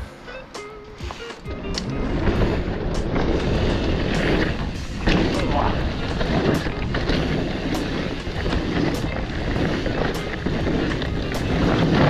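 Mountain bike riding fast down a dirt downhill trail, heard from a camera mounted on the rider: rolling tyre noise and wind, with frequent sharp rattles and knocks from the bike over the rough ground, growing loud about a second and a half in as the bike gets up to speed. Background music plays underneath.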